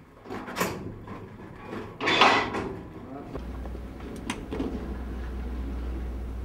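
Metal ash buckets scraping and clattering as a stoker handles them for hoisting in a coal-fired steamship stokehold, the loudest scrape about two seconds in. A steady low hum sets in just past the middle.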